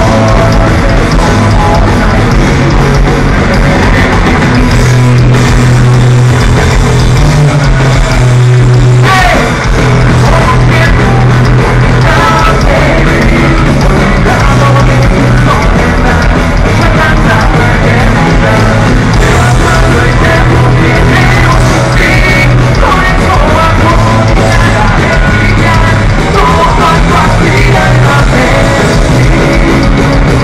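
A punk rock band playing loud live: distorted electric guitars, bass and drums with a sung lead vocal.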